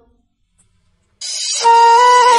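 About a second of silence, then background music comes in and swells: a slow melody of long held notes on a flute-like wind instrument.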